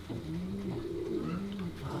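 Racing pigeon cooing: several low coos in a row, each rising and falling in pitch.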